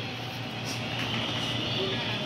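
Steady background hum and hiss of room noise, with no distinct event.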